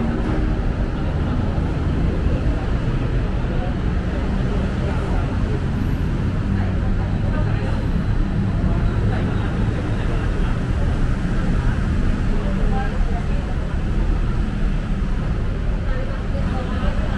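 Steady city road traffic running below, a continuous rumble, mixed with indistinct voices of passers-by.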